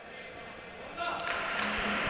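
Ambient sound of an indoor futsal match in a large, echoing sports hall: faint at first, then from about a second in a louder spread of hall noise with a couple of sharp knocks.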